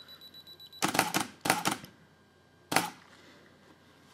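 Canon EOS 5D Mark II firing a three-shot auto exposure bracket: a thin high self-timer beep stops about a second in, then clusters of mirror and shutter clacks follow over the next two seconds, the last one coming after a longer gap for the slowest exposure.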